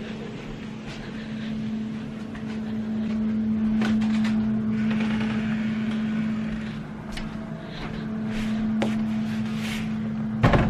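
A steady low electrical hum, with a few short clicks and rustles of handling scattered through it.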